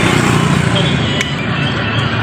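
Steady low rumble of motor-vehicle noise, with a faint click or two.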